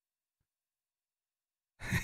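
Near silence, then near the end a man's breathy exhale as a laugh begins.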